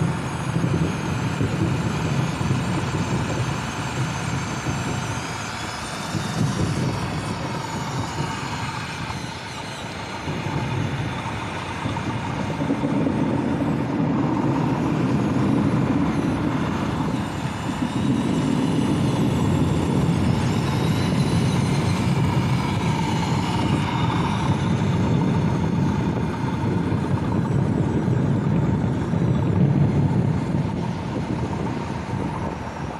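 1/14-scale RC bulldozer working. Its electric drive motors and gearboxes whine, rising and falling with the throttle, over a low rumbling clatter from the tracks as it pushes dirt and rocks and turns.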